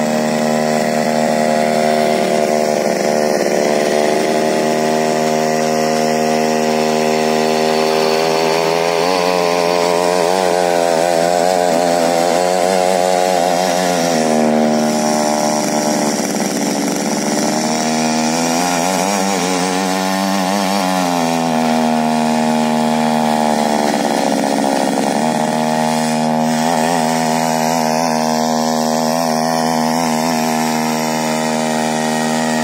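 Small petrol engine of a mini weeder (rotary tiller) running at high speed while its tines churn loose soil. The engine note wavers up and down several times as the load on the tines changes.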